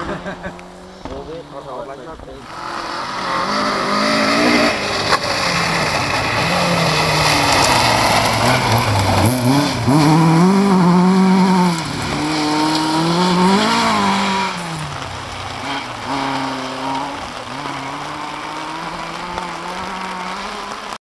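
A rally car on a gravel stage comes in, its engine revving up and down through the gears. It is loudest about ten seconds in and fades away after about fifteen seconds, with the rush of its tyres on the loose gravel under the engine.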